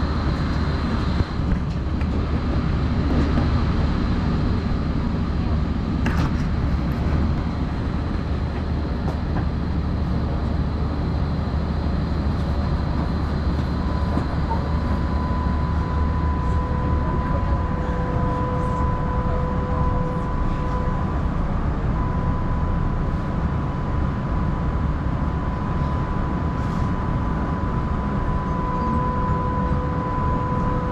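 Tram interior sound: a steady low rumble from the tram, with a thin, steady high electric whine that comes in about halfway through and holds.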